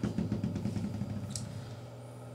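Steel AK-47 bolt carrier and bolt being lifted free of the receiver and handled: light metallic clicks and rattles that thin out over the first second and a half, over a steady low hum.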